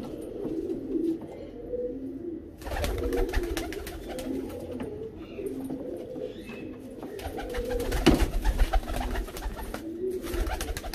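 Teddy pigeon cocks cooing over and over, their low calls repeating through the whole stretch. A low rumbling noise with scattered light clicks joins in about three seconds in, and there is one sharper knock near the end.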